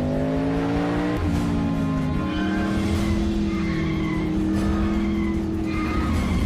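Muscle car engine sound effect revving up over the first couple of seconds, then holding a steady high note at speed, mixed with a music score.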